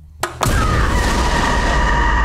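Horror-trailer stinger: two sharp cracks, then a sudden loud boom that carries on as a sustained, piercing sound. A heavy low rumble sits under steady high tones, like a jump-scare hit.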